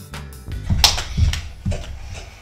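Background music cuts out at the start. About half a second in come four or five thumps and a sharp slap, bare feet landing on a wooden floor as children finish a set of jumping jacks.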